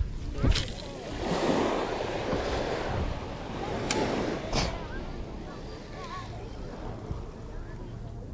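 Small waves breaking and washing up a sandy shore, swelling for a few seconds and then easing off, with a few sharp knocks of handling noise.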